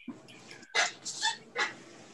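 An animal's short high yelps, about four in quick succession, heard through a video-call microphone.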